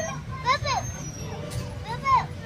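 A toddler's short, high babbling calls, two quick rising-and-falling squeals about half a second in, over a low steady rumble.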